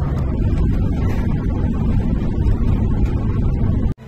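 A car's engine and road noise while it descends a steep grade in gear on engine braking: a steady low rumble that cuts off suddenly near the end.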